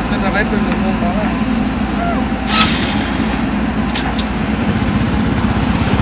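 Small motorcycle engine idling steadily, with a few short voice sounds over it.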